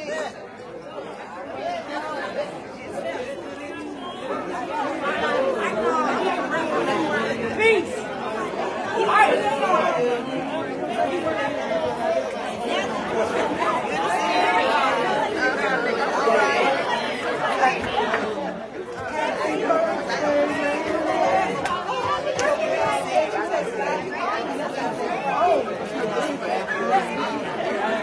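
Many people talking at once in a large room: overlapping conversation of a congregation, building up over the first few seconds, with a brief lull just past the middle.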